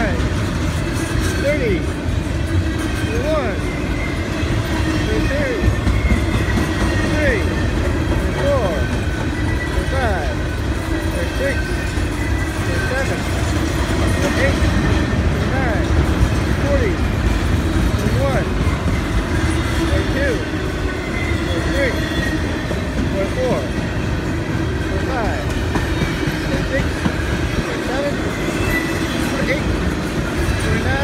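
Freight train of autorack and intermodal well cars rolling past close by: a steady heavy rumble of steel wheels on rail, with frequent short squeaks and squeals from the wheels throughout.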